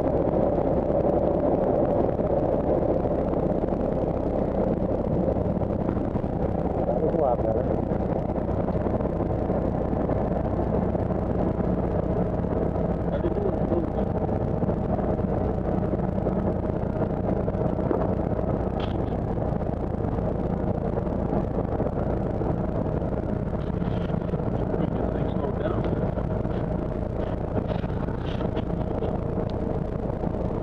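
Cessna 172's piston engine and propeller heard from inside the cabin: a steady, even drone with a held tone, as the plane rolls along the runway.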